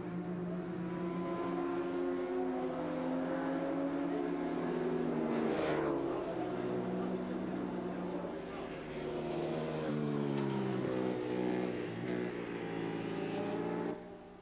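Racing motorcycle engines running at high revs on the track; one bike passes close about five seconds in, its pitch dropping as it goes by, and the engine note rises and falls again later as bikes accelerate and change gear.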